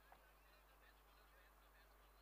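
Near silence, with a few faint short chirps.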